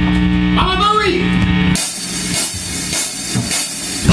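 Rock band jamming on electric guitars, bass and drum kit: a held, ringing chord through the amps with a pitch swoop about a second in cuts off about two seconds in, leaving the drums and cymbals playing more lightly before the full band comes back in loud at the end.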